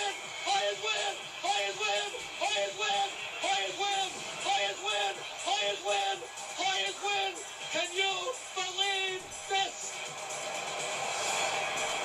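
A radio play-by-play announcer shouting the same short call, 'Hoyas!', over and over, about twice a second, in a steady chant-like rhythm, heard through a TV speaker. Near the end a rising whoosh swells up as a studio graphic comes on.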